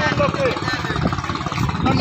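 People's voices talking in the background over the steady, evenly pulsing running of an engine.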